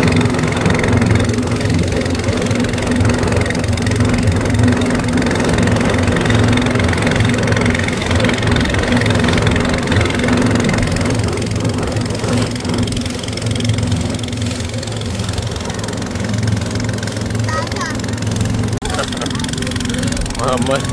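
Engine of a small wooden passenger boat running steadily underway, a constant low drone, with the rush of water churned up by the hull.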